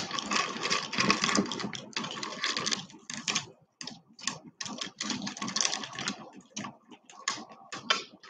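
Strands of stone beads clicking and rattling against each other as beaded turquoise necklaces are handled, an irregular run of small clicks that is densest in the first three seconds and then sparser.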